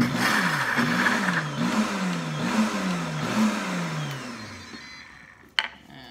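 Pampered Chef Deluxe Cooking Blender pulsing heavy cream and chocolate pudding mix into mousse. The motor starts abruptly and its pitch rises and falls about five times, then winds down and stops about five seconds in. A sharp knock follows near the end.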